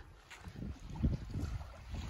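Wind rumbling on the microphone in uneven low gusts.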